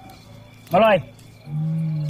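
A loud shouted "hai!" call about a second in, its pitch rising then falling; near the end a low steady held note starts and keeps going.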